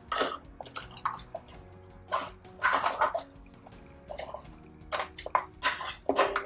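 Light handling noise of a small clamp-type holder being fitted onto a violin's strings beside the bridge: scattered clicks and scrapes, with a faint ring from the strings underneath.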